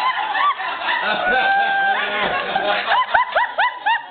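A woman's high-pitched squealing yelps during a spanking, each one rising and falling, with one cry held steady about a second in. The yelps come faster near the end, about five a second, and a single sharp smack lands just after three seconds in.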